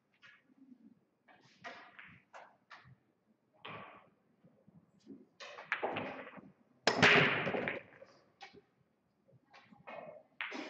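A 9-ball break shot about 7 s in: the cue ball smashes into the racked pool balls with a loud crack, then the balls clatter and rebound off the cushions for about a second. Fainter scattered clicks and knocks come before it.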